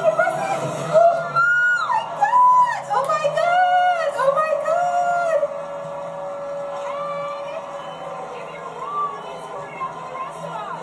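Several people's high-pitched excited cries and whoops over background music, one after another in the first half, then dying down to quieter voices after about five and a half seconds.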